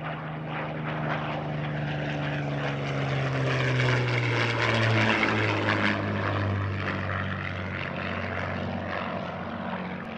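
Supermarine Spitfire's Rolls-Royce Merlin V12 engine on a low fly-by. It grows louder to a peak about halfway through, then the pitch drops as the plane passes and pulls away.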